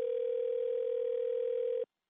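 Telephone dial tone on the line after the other party has hung up: one steady, unbroken tone that cuts off suddenly near the end.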